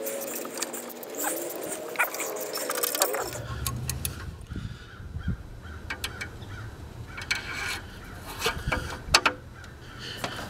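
Metal hand tools clinking and clattering as a ratchet with a long socket extension is handled over the engine. A few squeaky gliding sounds come in the first three seconds, and a low steady hum starts about three seconds in.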